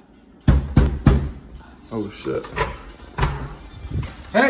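Three loud knocks on a door about half a second in, followed by voices talking.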